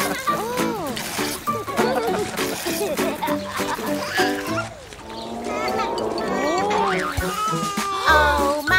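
Children's song backing music with a cartoon baby's voice over it: giggling, then whimpering as if about to cry.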